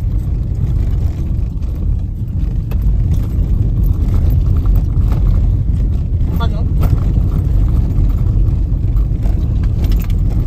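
Steady low road and wind rumble inside a moving vehicle travelling along a road.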